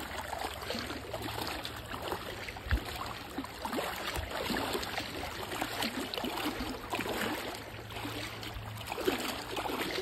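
Legs wading through shallow water, with irregular sloshing and splashing at each step.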